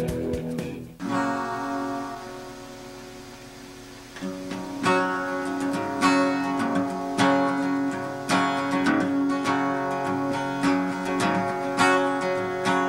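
Acoustic guitar being strummed. Other music cuts off about a second in. A single chord then rings and fades away, and from about four seconds on the guitar keeps up a steady run of strummed chords.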